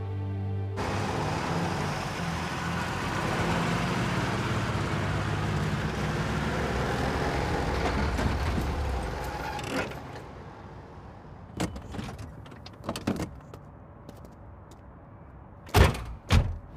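A car engine runs as a car pulls up, then dies down about ten seconds in. A few light clicks follow, and near the end comes a loud thud like a car door shutting.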